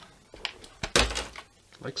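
A light click or two, then a short dull knock about a second in: metal bridge hardware being handled and lifted off the guitar body.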